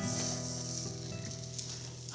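Thick Porterhouse steak sizzling on a hot grill, stood on its fatty edge so the rendering fat flares up. Soft sustained background music plays under it.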